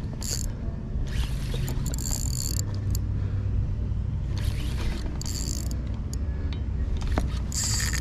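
Spinning reel's drag buzzing in about six short bursts as a hooked bluefish runs and pulls line off, over a steady low rumble. The drag is set light to protect 15 lb test line.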